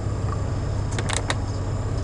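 Steady low cabin hum inside a 2005 Honda Odyssey minivan running at a standstill, with three or four quick light clicks about a second in.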